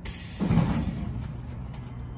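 Tailgate end latch of a Brandon FHD dump body releasing with a single metallic clunk about half a second in, over a high hiss that cuts off about a second and a half in.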